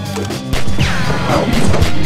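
Action-fight soundtrack: music with a steady beat, broken about half a second in by a loud crashing hit, followed by a falling sweep and more impact hits.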